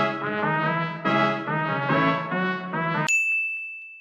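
Sampled keys playing a slow C-sharp-minor chord progression, layered and drenched in reverb, with a new chord about every second. About three seconds in the music cuts off abruptly and a single high steady beep sounds to the end.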